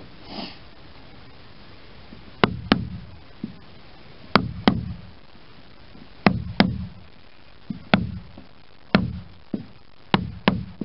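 Caulking mallet striking a caulking iron, driving twisted fibre into the seam between the pine planks of a wooden boat hull. The sharp knocks start about two seconds in and come every second or two, often in quick pairs, with a few lighter taps between.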